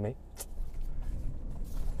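Ford F-150's 3.5-litre twin-turbo V6 running low and steady, with one sharp click about half a second in and a rising rush of noise near the end.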